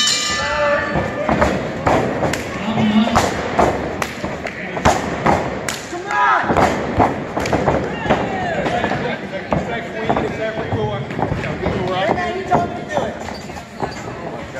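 Repeated thuds and knocks on a wrestling ring, with voices shouting around it.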